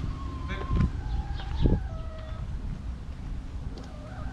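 Backyard hens giving drawn-out, level-pitched calls, several overlapping notes in the first half, over a low rumble with a couple of dull thumps.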